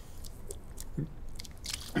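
A man gulping a drink from a small bottle: soft swallows with a few small mouth and bottle clicks.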